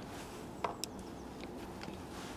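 Faint clicks of a T27 Torx screwdriver fitting into the air filter mounting bolts, over quiet room tone. Two small clicks come close together about two thirds of a second in, and a fainter one near the end.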